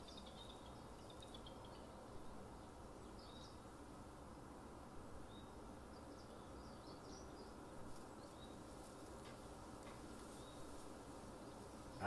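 Near silence: faint steady room hum and hiss, with a few faint short high chirps scattered through.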